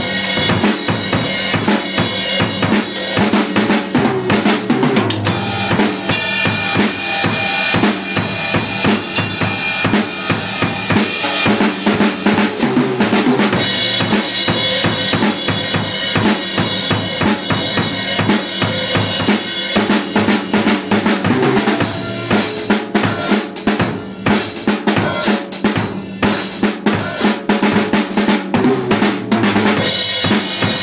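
Acoustic drum kit played in a fast solo: a dense, unbroken run of kick drum, snare and tom strokes under washing cymbals, with somewhat sparser hits for a few seconds past the middle.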